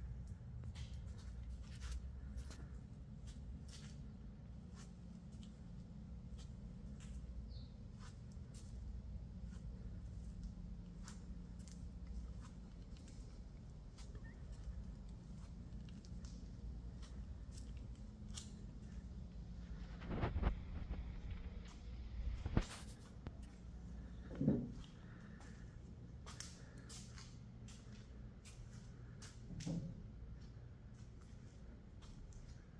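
Low steady room hum with scattered faint clicks, and three louder short knocks a little past the middle.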